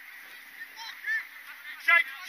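A series of short honking calls, each rising then falling in pitch, a few over the two seconds and loudest near the end.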